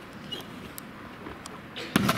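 A gymnast landing a front layout off a mini-trampoline onto a landing mat: a sudden loud thud near the end, after a few faint taps.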